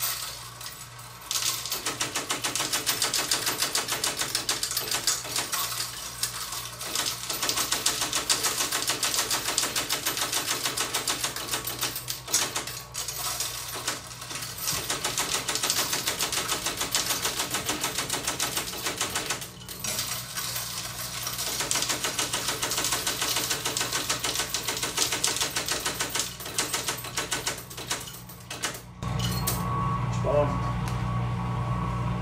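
Electric coin counter running loud, a rapid continuous clatter of silver coins feeding through it. It starts about a second in, breaks off briefly a few times, and stops just before the end.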